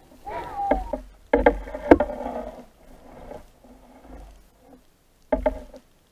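Water splashing and gurgling around the camera at the sea surface, in several uneven bursts, the loudest about one and a half to two seconds in and a short last one near the end.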